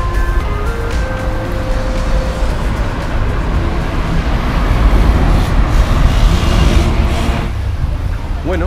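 City street traffic noise with a heavy low rumble, growing louder in the second half and cutting off suddenly near the end. Background music fades out in the first couple of seconds.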